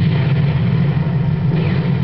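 Archive war-footage soundtrack from a television documentary: a loud, steady low rumble, with a brief falling whistle near the end, heard through the TV's speakers.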